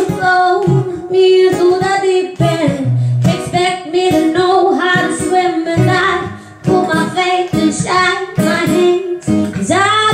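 Woman singing a melody into a microphone over an acoustic guitar accompaniment, her pitch bending and sliding through long held phrases.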